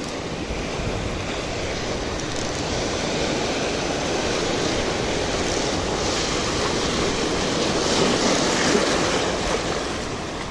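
Small waves breaking and washing over shoreline rocks, a steady rush of surf that swells somewhat louder near the end, with wind on the microphone.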